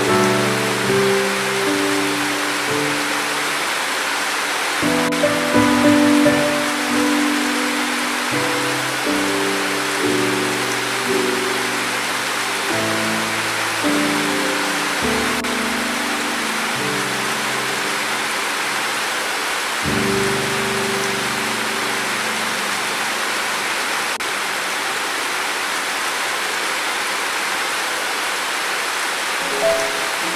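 Steady rain with soft, slow piano music laid over it. The piano falls silent about two-thirds of the way through, leaving only the rain, and comes back in at the very end.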